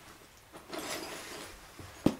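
Faint rustling of a cloth bag of flint flakes being handled, a soft scraping hiss that starts about half a second in and lasts about a second.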